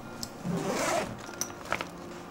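Zipper of an insulated fabric soft cooler bag pulled open in one quick rising stroke of about half a second, followed by a few light ticks.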